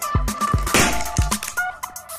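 Latex balloon squeezed between gloved hands until it bursts, a short noisy burst a little under a second in, over upbeat background music.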